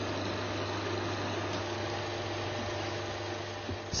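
Film projector running: a steady whirring hiss over a low electrical hum.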